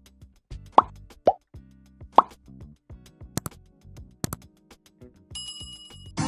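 Subscribe-button animation sound effects over faint background music: three short cartoon pops, then a few sharp clicks, then a ringing bell chime near the end.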